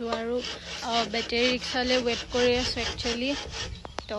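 A woman talking in quick, short phrases.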